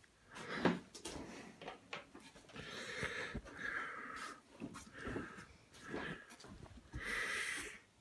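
A St. Bernard breathing hard and audibly, about one breath a second, as it strains to climb onto a bed.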